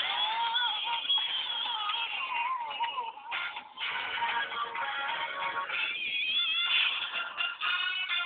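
Music playing for a dance, with a wavering melody line and a brief dip a little after three seconds in.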